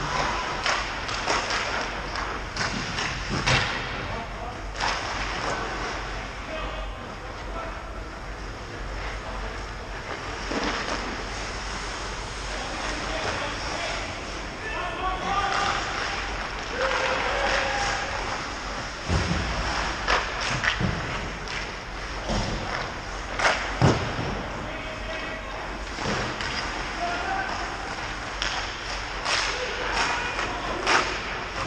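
Ice hockey play in an indoor rink: sharp knocks of sticks and puck and thuds against the boards, loudest and most frequent about twenty to twenty-four seconds in, with players shouting in the distance.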